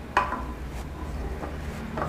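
A frying pan knocks once against an electric hot plate as it is handled, with a brief ringing that fades, followed by a few faint light ticks over a low steady hum.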